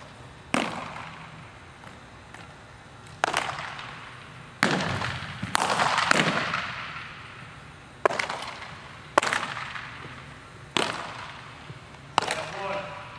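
Baseballs popping into catchers' mitts, about eight sharp smacks a second or two apart, each with a long echo off the walls of a large indoor hall. The loudest come close together about halfway through.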